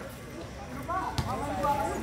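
Faint, distant voices of players and onlookers on an outdoor basketball court, with one sharp knock about a second in.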